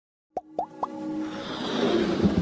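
Animated logo intro sound effects: three quick pops rising in pitch within the first second, then a swelling riser with music under it that grows steadily louder.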